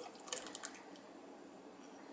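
Thin liquid poured from a small glass bowl into a saucepan of milk: a few faint, soft splashes and small clicks in the first half second or so, then only a faint steady hiss.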